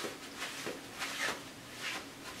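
A paper towel rustling and swishing as it is handled and wiped at the edge of a gel printing plate: a few soft, short scratchy strokes.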